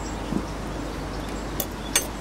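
Steady outdoor background noise without speech, with two short faint clicks near the end.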